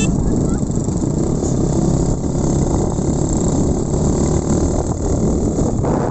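Motorcycle engine running at road speed while riding, mixed with heavy wind rumble on the microphone.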